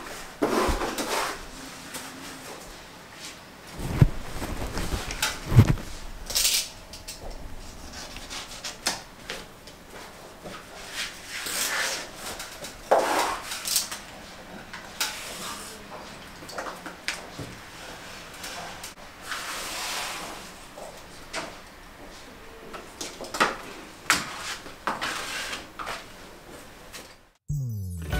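Irregular knocks, taps and rustling from handling plastic acrylic wall panels and their protective film. The loudest sounds are two sharp thumps about four and five and a half seconds in. Music starts right at the end.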